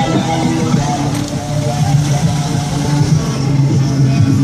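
Loud electronic music with a strong bass line, played through a custom car audio system: a van's door panel fitted with a large subwoofer and smaller speakers.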